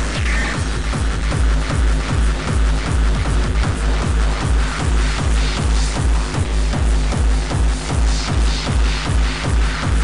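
Free-party tekno music: a heavy, fast four-on-the-floor kick drum at about three beats a second, under a dense, noisy synth layer.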